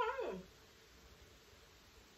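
A high, whining vocal cry that slides down in pitch and stops about half a second in, followed by quiet room tone.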